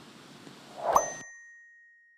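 A single bright ding, like a notification-bell sound effect: a short swish into one sharp strike, then one clear high tone that rings on and slowly fades.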